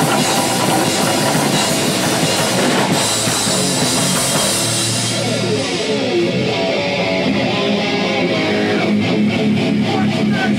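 A live rock band playing loud and distorted: drum kit, electric bass and electric guitar. About six seconds in the bright top end thins out, leaving the bass and guitar to carry on.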